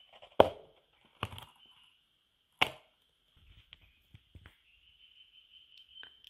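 Snap-on lid of a clear plastic deli cup being pried off: three sharp plastic snaps, the first loudest, then a few lighter clicks as the lid comes free.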